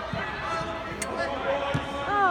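Indistinct chatter of spectators in a large indoor sports hall, with a few short thuds of a football being kicked, the sharpest about a second in.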